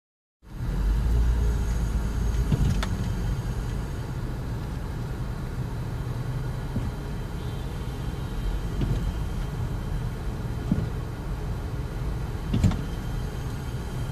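Steady low rumble of a car's engine and tyres heard inside the cabin as it creeps along in slow traffic, with a couple of brief clicks, one about three seconds in and one near the end.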